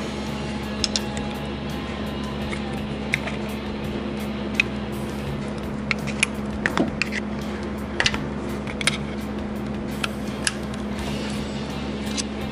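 A steady low hum, with scattered sharp clicks and taps of metal as hands and a pry tool work at the timing belt and crank sprocket of a Suzuki Samurai engine.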